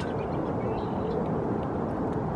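Steady outdoor background noise, an even rumble and hiss with no distinct event.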